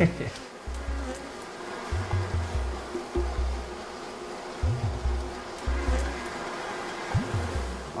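Honeybees buzzing around a wooden hive entrance in a steady drone, over music with deep bass notes that change about once a second.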